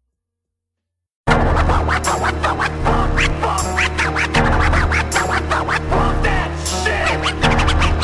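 About a second of silence, then a hip hop beat starts abruptly: a steady bass and drum pattern with turntable scratching, many quick back-and-forth sweeps, over it.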